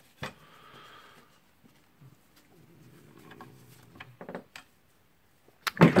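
Faint handling noises from a cordless circular saw's housing parts being fitted together by hand: a sharp click near the start, then scattered light clicks and a small knock a little past halfway.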